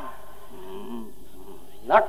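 Steady hiss and hum of an old analogue tape recording in a pause between sentences, with a faint voice murmuring underneath.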